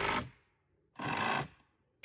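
Power drill driving screws into wood in two short bursts of about half a second each, about a second apart.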